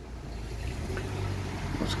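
Car engine and road noise heard from inside the cabin, a steady low hum slowly getting louder as the car creeps forward in traffic.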